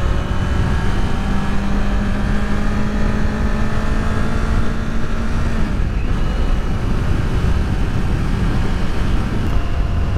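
Kawasaki Z400's 399 cc parallel-twin engine running at a steady cruise under the rider, mixed with heavy wind and road rumble; the engine note changes slightly about six seconds in.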